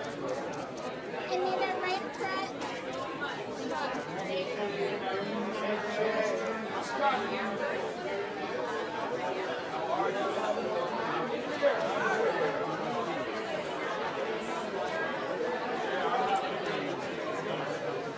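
Chatter of many people talking at once, a steady murmur of overlapping voices with scattered faint clicks.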